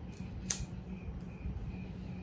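A pipe lighter clicks once, sharply, about a quarter of the way in as it is struck to light a small corncob pipe that is being puffed, over a faint steady hum.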